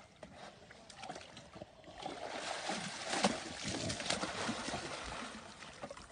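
Swimming-pool water sloshing and splashing as a man wades with a wild boar and pushes it out of the pool. It is louder and more broken from about two seconds in.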